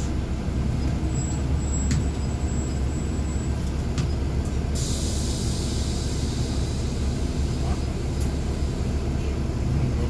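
Caterpillar C13 inline-six diesel engine of a NABI 40-SFW transit bus rumbling low, heard from inside the bus. There are two light clicks about two and four seconds in, and a steady hiss starts suddenly about five seconds in and holds.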